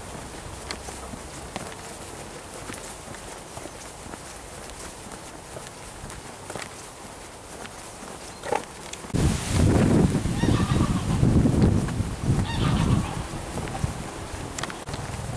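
Geese honking, a loud run of repeated calls starting about nine seconds in and lasting about four seconds.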